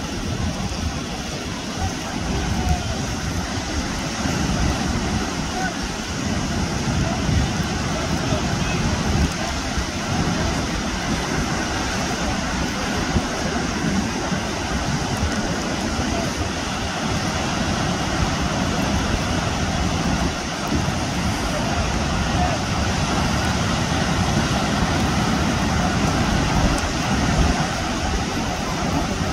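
Steady wash of surf breaking on the shore, with wind buffeting the microphone in a low, uneven rumble.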